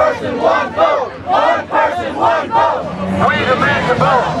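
Crowd of marching protesters shouting together, many voices overlapping and rising and falling in a rough rhythm.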